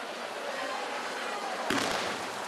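Fireworks going off on a burning barrel: a steady hiss of sparks, with one sharp bang near the end.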